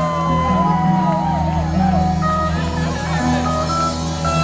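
Live rock band playing an instrumental passage between sung lines: electric guitars with bending, wavering notes over steady bass, keyboard and drums, heard from the audience.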